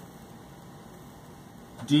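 Quiet room tone in a pause between words, a faint even hiss with no distinct sounds; a man's voice starts again near the end.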